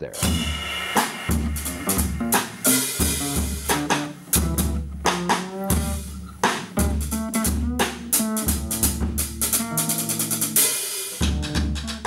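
A band playing: a drum kit keeping a steady beat with sharp snare and kick hits, under a fretless acoustic-electric bass line and other pitched instrument parts.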